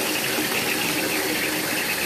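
Bathtub faucet running steadily, its stream pouring through a handheld mesh strainer of crumbled bubble bar and splashing into a filling, foamy tub.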